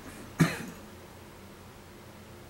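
A man coughs once, short and sharp, about half a second in; after it only quiet room tone.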